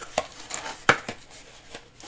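Cardboard DVD mailer being folded shut and its flap tucked in: light rustling of the card with two sharp clicks, the louder one about a second in.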